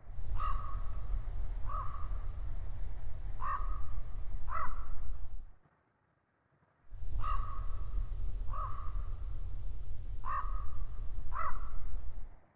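A bird giving short, crow-like calls, four in a row, a break of about a second, then four more at the same spacing, over a steady low rumble.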